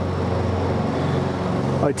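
A steady, low, engine-like mechanical hum over a faint hiss, holding the same pitch throughout; a man's voice starts a word right at the end.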